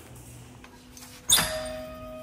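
Spray-booth door latch clunking as the door is handled, one sharp hit about a second and a quarter in. A faint steady tone lingers after it.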